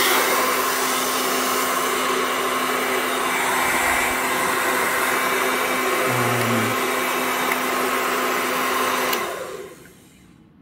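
Remington hand-held hair dryer running with a steady rush of air and motor hum, then switched off about nine seconds in, the fan spinning down within a second.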